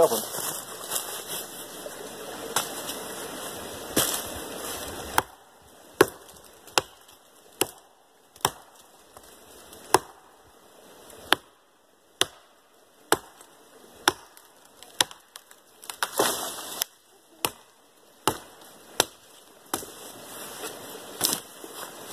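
Hatchet chopping at the base of a small sapling: sharp wooden strikes, a couple at first, then a steady run of blows a little under one a second from about six seconds in.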